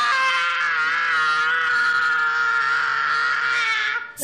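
A person screaming: one long, high-pitched scream held steady with a slight waver, cutting off abruptly at the end.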